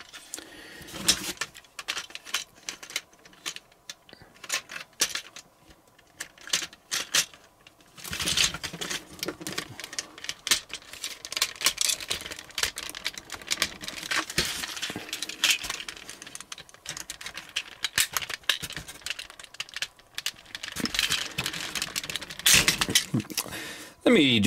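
Hard plastic parts of a Transformers Devastator action figure clicking and clattering as they are handled and fitted together. The clicks are sparse at first and come thicker and louder from about eight seconds in.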